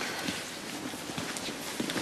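Footsteps knocking on a hard floor, over a steady background hum.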